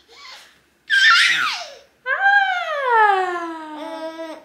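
Young baby squealing and cooing: a short, high squeal about a second in, then a long drawn-out coo that slides down in pitch.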